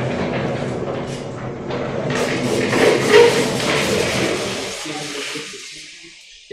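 Large vertically sliding lecture-hall chalkboard panels being moved past each other, a long rolling rumble that builds to its loudest about three seconds in and dies away near the end.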